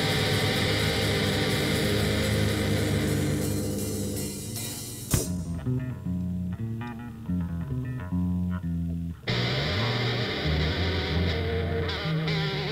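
Heavy rock band music with distorted electric guitar. After a sharp hit about five seconds in, the band drops out and a bass guitar plays a stepped line alone for about four seconds, then the full distorted sound returns.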